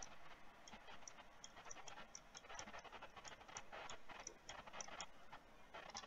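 Faint scratching of a stylus writing on a tablet surface, in short strokes with light regular ticks.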